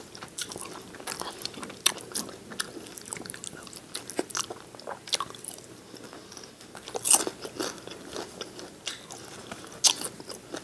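Close-miked biting and chewing of fried chicken wings as meat is picked off the bone, with short crisp crunches throughout. The loudest crunches come about two seconds in, around seven seconds, and near the end.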